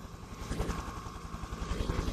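Helicopter sound effect played back as a spatialised audio object, its rotor chop a rapid, even low pulsing over a steady engine noise.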